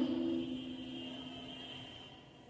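Several voices holding one long drawn-out vowel together, fading away over about two seconds.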